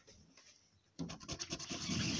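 A large metal coin scratching the coating off a paper scratch card in quick rasping strokes, starting about a second in.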